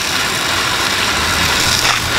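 A fire engine running steadily, with a constant hiss of water from a fire hose stream over its low hum.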